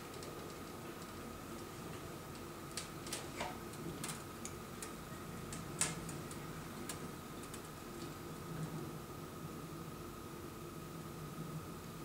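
Faint, scattered light clicks and taps of hands handling thin flying-lead tubing and its fittings on the instrument, clustered in the middle, the sharpest just before halfway. Beneath them runs a steady low hum with a thin high tone.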